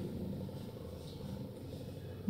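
Quiet room tone, a faint steady low hum, with light strokes of a marker on a whiteboard.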